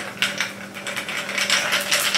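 Ice cubes rattling and clinking against a tall drinking glass as they are stirred with a stick: a fast, dense run of clinks starting a moment in.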